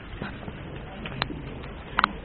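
A pigeon cooing low and softly over a steady background murmur, with a few sharp clicks, the loudest a little past a second in.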